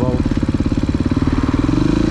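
Dirt bike engine running as the bike rides along at low, steady throttle, its pitch rising slightly near the end as it picks up a little speed.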